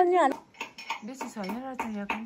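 Metal utensils clinking against steel dishes, a run of short clinks, with a wavering pitched hum underneath.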